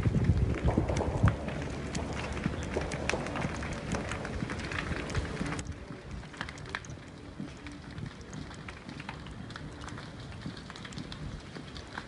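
Crackling and rushing noise of a wildfire burning in wind, dotted with many small sharp crackles. The whole sound turns quieter about halfway through.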